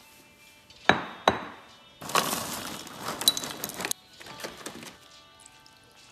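A bowl set down on a countertop with two knocks about a second in, then dry ring-shaped oat cereal poured into it for about two seconds, a dense clicking patter of pieces hitting the bowl. A shorter, softer pour follows, over faint background music.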